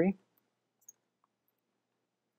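Faint, isolated clicks of computer keyboard keys, the clearest a little under a second in, with the tail of a spoken word at the very start.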